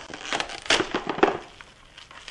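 Plastic wrap being pulled off the roll in its box, torn off and laid down flat, crinkling with several sharp crackles that die away after about a second and a half.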